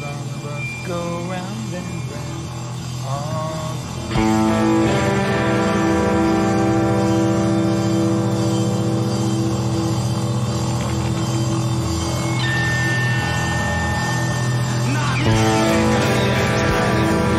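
Voices with wavering pitch, then about four seconds in an electric guitar comes in sharply. It picks a short figure and lets the notes ring and sustain for about eleven seconds, with a fresh picked figure near the end.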